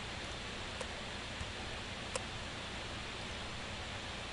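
Steady microphone hiss and room tone, with two faint clicks, one just under a second in and one a little after two seconds, from a computer mouse placing points.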